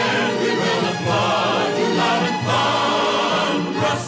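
Choir singing full-voiced with orchestra, many voices wavering in vibrato together, easing off just before the end.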